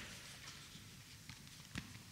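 Faint room tone with a few soft taps and shuffles, a person's footsteps on a hard floor; the sharpest tap comes right at the start and another near the end.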